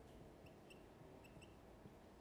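Faint marker-pen squeaks on a whiteboard during handwriting: about four brief, high squeaks over quiet room tone.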